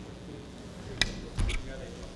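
Desk gooseneck microphone being handled: a sharp click about a second in, then a double knock with a low thump half a second later.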